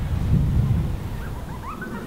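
Wind buffeting the microphone outdoors: a low rumble, strongest in the first second, with a few faint short rising chirps in the second half.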